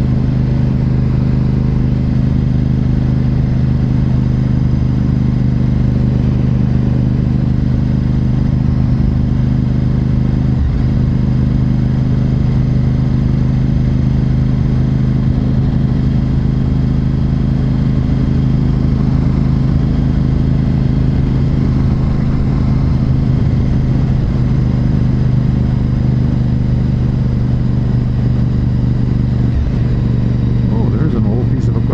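Honda RC51 SP2's 1000cc V-twin engine running steadily at an even cruising speed while riding, with no revving or gear changes.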